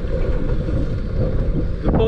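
Steady wind rumble on the microphone, with choppy water moving around a small open fishing boat.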